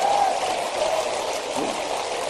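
A live audience's reaction in a hall, a steady wash of crowd noise that fades slowly toward the end.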